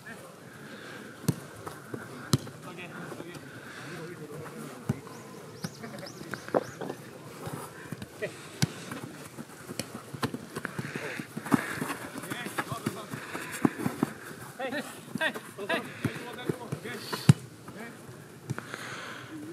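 A football being kicked, sharp knocks every second or few seconds, with players' voices calling out faintly across the pitch.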